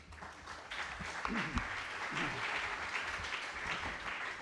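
Audience applauding, swelling over the first second and then continuing steadily.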